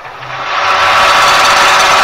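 Loud, engine-like machine noise played as a sound effect in a radio advert; it swells up over the first second and then runs steadily.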